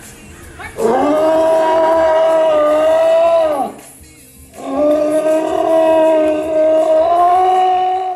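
A sea lion calling: two long, steady, drawn-out calls of about three seconds each, with a short break between them.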